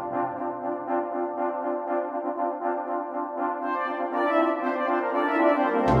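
Computer-rendered brass band music: the tenor horns play a repeated quick figure on their own, more quietly than the passages around it. The sound fills out toward the end before the full band, bass included, comes back in right at the close.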